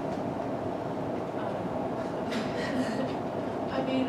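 Room tone: a steady, even hum fills the pause, with a brief faint voice sound about two and a half seconds in.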